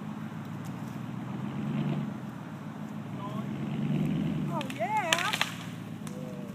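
Chevy Silverado pickup engine pulling under load, its low drone rising and falling in two swells as it drags a fallen tree. Near the end come a few sharp cracks and a wavering shout from a person's voice.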